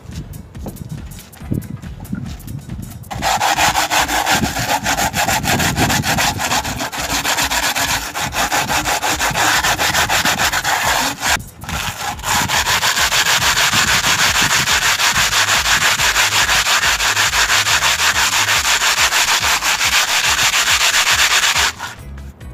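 Sandpaper rubbed rapidly back and forth over the surface of a newly cast cement flower pot, smoothing it. The quick, scratchy strokes start about three seconds in and stop briefly around the middle before going on steadily.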